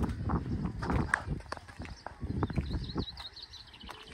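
Wind buffeting the microphone in uneven gusts, with scattered knocks, dying down about three seconds in. Small birds chirp faintly near the end.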